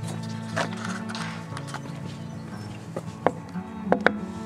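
Background music, with a few sharp knocks near the end: knuckles rapping on the glass panes of a front door.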